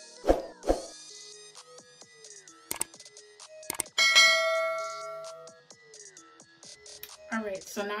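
Electronic background music with a few drum hits, then a click and a bell-like notification chime about four seconds in that rings and fades over a second or so: a subscribe-button sound effect.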